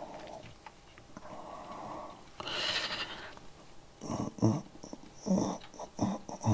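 A man breathing out audibly and making short wordless murmurs near the microphone: a low hiss, then a higher hiss, then two brief hummed sounds near the end.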